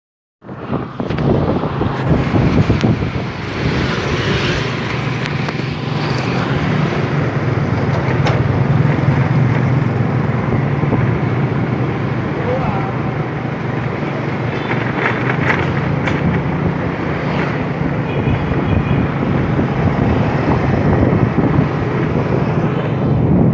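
Motor scooter riding through city traffic: its engine runs with a steady low hum under wind noise on the microphone and the noise of surrounding motorbikes and cars.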